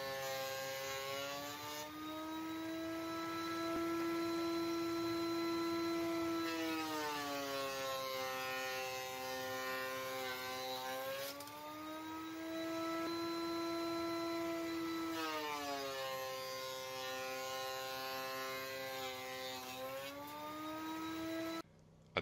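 Benchtop thickness planer running, a steady motor-and-cutterhead whine. Its pitch sags twice, about a third and two-thirds of the way through, as the walnut board feeds in and loads the motor, and it climbs back each time the board clears. The sound cuts off suddenly at the very end.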